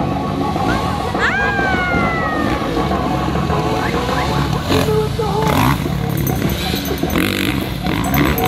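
Motocross dirt bike engines running on the track, with one bike's note falling off about a second in.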